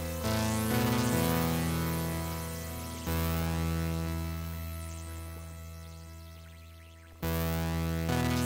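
Electronic synthesizer music from the SunVox modular synth/tracker: steady pitched synth notes over a low bass. A chord struck about three seconds in fades away slowly for some four seconds before new notes come in sharply near the end.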